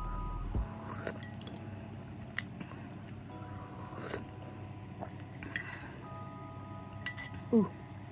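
Soft mouth sounds of someone sipping and chewing a spoonful of chicken noodle soup, with a few light clicks, over faint background music with held notes. A short "oh" comes near the end.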